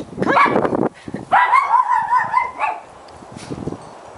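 A pug's voice: a short call, then a long high, wavering whine lasting about a second and a half.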